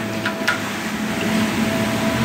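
Zipper Super Spinner rotary carpet-cleaning tool running on carpet under truck-mount vacuum and about 850 PSI water pressure: a steady rushing hum of spinning jets and suction, with two short ticks near the start.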